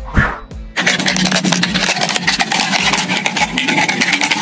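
Plastic bottle crackling and crinkling as it is cut with a utility knife, a dense run of fine clicks starting just under a second in, over background music. A short swoosh comes just before.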